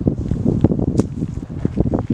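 Rustling and wind buffeting on the microphone outdoors, with one sharp click about a second in.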